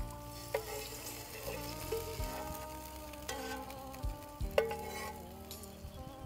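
Hot fried-garlic fat ladled from a wok onto a bowl of sour soup, sizzling as it hits the broth, with several light clinks of the metal ladle.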